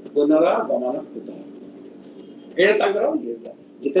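A man's voice speaking in two short phrases, with a pause of about a second and a half between them.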